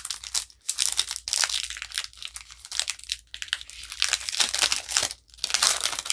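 Foil wrapper of a Pokémon Sword & Shield booster pack crinkling and tearing as it is ripped open by hand, in a run of sharp crinkles with a few brief pauses.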